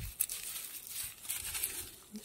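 Dry onion tops and papery onion skins rustling and crinkling as a hand handles and picks up freshly harvested onions, with a few short crackles.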